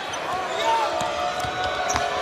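A basketball being dribbled on a hardwood court, with short knocks and squeaks over the steady background noise of an arena crowd.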